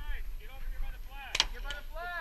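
Two sharp shots from a paintball marker about a third of a second apart, the first the louder, over the voices of players.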